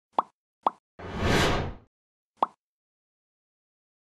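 Logo-sting sound effects: two short pops, then a whoosh about a second in, then a third pop.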